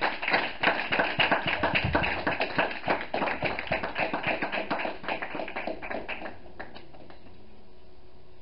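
A congregation applauding: a dense scatter of hand claps that thins out and stops about six seconds in.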